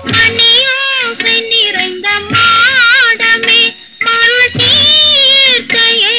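Female voice singing high, long-held notes with wide vibrato over film-orchestra accompaniment in a Tamil film song, with a brief break in the line about four seconds in.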